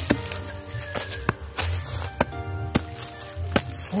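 A small hand digging tool chopping into hard, packed soil threaded with rubber-tree roots: about eight sharp, irregular strikes, over background music.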